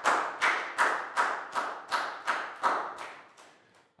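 Hand clapping in a steady rhythm, about three claps a second, given as praise after a well-answered drill. The claps stop shortly before the end.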